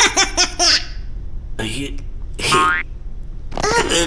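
High-pitched cartoon laughter from a green caterpillar character in the first second, followed by two short cartoon sounds in the middle and a cartoon voice crying out near the end.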